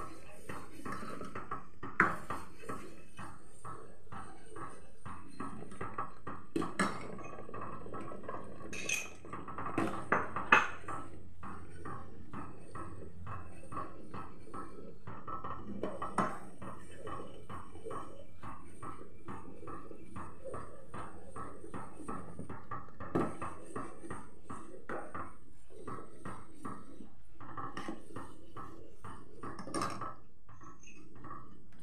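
Metal ladle stirring milk in a steel pan, scraping and clinking against the pan, with several sharper knocks on the rim, the loudest about two seconds in and again about ten seconds in.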